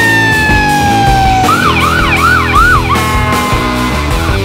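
Emergency vehicle siren over rock music: a slow falling wail, then about a second and a half of fast yelp sweeps, about four a second, then a steady held tone that sinks slightly.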